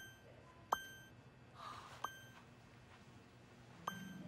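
Short bell-like dings, four in all and about a second or more apart, each a sharp strike with a brief ring, over a faint low hum.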